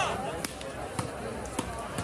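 A volleyball being struck by hand during a rally: three sharp slaps about half a second apart, over a steady crowd murmur.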